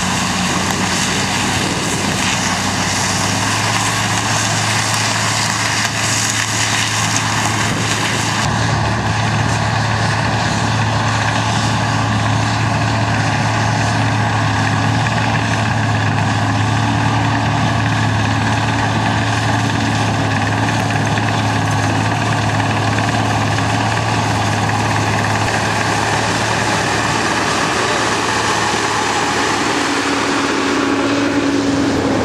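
Steady diesel engine drone of a tractor hauling a sugar cane transporter, with a cane harvester working alongside it at first. About eight seconds in the sound changes abruptly, and a tractor pulling the loaded transporter runs on with a steady hum.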